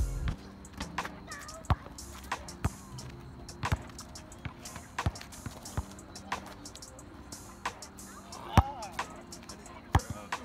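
A basketball bouncing on an asphalt court: sharp, irregular hits about once a second, the loudest near the end. Background music with steady bass notes plays under it.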